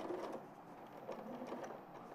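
Domestic electric sewing machine stitching down a patch pocket through layers of fabric, running faintly.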